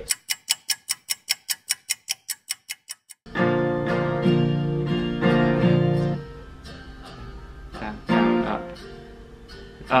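A fast, even run of sharp ticks, about six a second, for the first three seconds. Then an acoustic guitar with a capo comes in suddenly, strumming chords loudly for a few seconds before carrying on more softly, a chord or a few notes at a time, as a learner practises chord changes.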